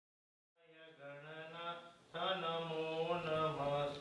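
A voice chanting a Hindu mantra in long held notes. It fades in about half a second in and grows louder about halfway through.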